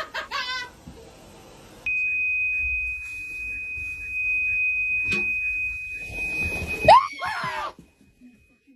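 A steady, high-pitched electronic beep holds for about five seconds. Near the end, a man is startled and lets out a loud yell that rises in pitch.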